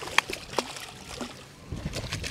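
Light knocks and clicks as a just-landed redfish is handled aboard a fishing boat: one sharp click just after the start, then a few softer knocks and low thumps.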